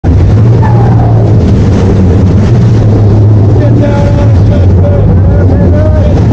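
Sportfishing boat's engines running with a steady, loud low drone, water churning at the stern, and crew voices calling out over it near the start and in the second half.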